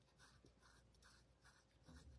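Near silence with faint soft scratching, about three strokes a second: fingers rubbing or scratching the bare skin of an arm.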